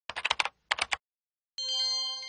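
Computer keys clicking in two quick bursts, about seven clicks and then three, like typing. About a second and a half in, a bright chime of several tones sounds and rings on.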